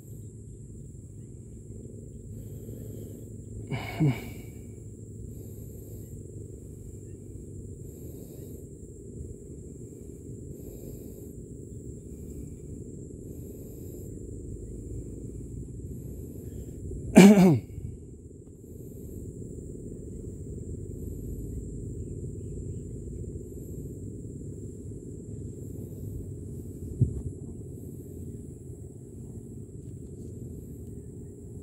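A person's voice makes two short, sharp outbursts with a falling pitch, like a sneeze or a cough. The first is about four seconds in, and the louder one comes about halfway through. Under them runs steady low background noise with a faint high whine.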